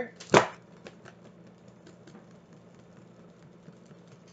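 A tarot deck being handled and shuffled: one sharp slap of the cards about a third of a second in, then faint scattered clicks of the cards.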